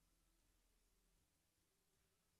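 Near silence: only a very faint hiss and low hum.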